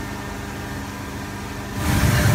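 Hot tub jets running: churning, bubbling water over the steady hum of the jet pump, growing louder near the end.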